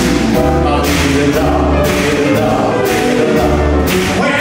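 Live soul-jazz band playing, with sustained sung voices over heavy bass notes and cymbals.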